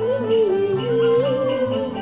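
Cantonese opera (yueju) music from a traditional Chinese ensemble. One melody line is held and bends slowly up and down in pitch over the accompaniment.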